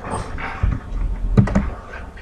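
Typing on a computer keyboard: a few keystrokes, bunched together about a second and a half in.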